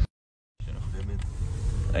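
A half-second gap of dead silence, then the low road and engine rumble heard inside a moving car's cabin, with a faint voice briefly near the middle.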